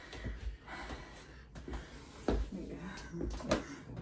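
Faint strained breaths and short grunts from a person trying to lift another, with a few soft knocks and rustles as bodies shift on the bed.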